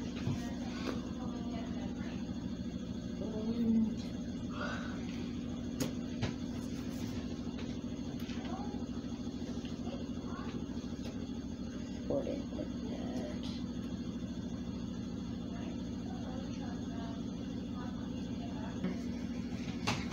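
Clothes dryer running steadily in the background: a constant low hum with a fast, even pulse. Small plastic building pieces click now and then as they are handled.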